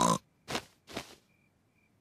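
Cartoon pig snorting: a voiced snort right at the start, then two short breathy snorts about half a second apart.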